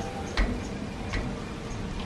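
A puppy's claws clicking lightly on a concrete floor as it gets up and moves, a few sharp separate taps over a steady background hiss.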